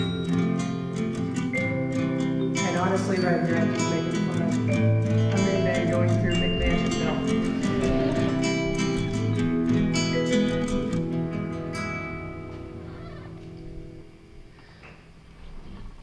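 Film score music led by a loose, slightly out-of-tune acoustic guitar, a cheap Stella practice guitar, plucked over a light rhythm; it fades out near the end.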